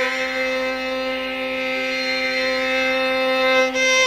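Carnatic classical music: the melody holds one long, steady note with a lower note sustained beneath it. Ornamented, gliding phrases resume at the very end.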